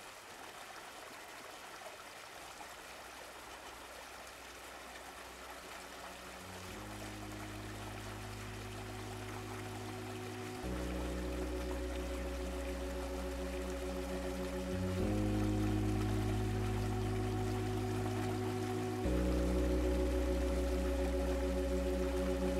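The opening of a melodic house DJ mix: a steady hiss of noise, then sustained synth chords over a deep bass enter about seven seconds in. The chords change roughly every four seconds, growing louder in steps with each change.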